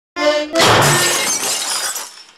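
A short pitched tone, then a loud glass-shattering sound effect whose crash fades away over more than a second.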